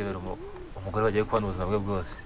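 A man's low-pitched voice speaking.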